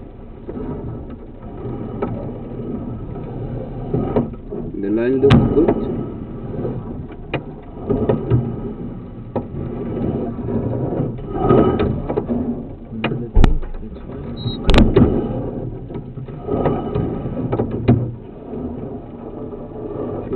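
Rumbling, rattling handling noise from a drain inspection camera's push rod being fed forward into the line, with several sharp knocks and indistinct voices in the background.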